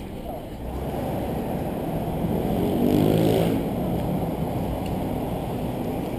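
City street traffic with a steady low rumble; about halfway through, a passing vehicle's engine grows louder and then drops in pitch as it goes by.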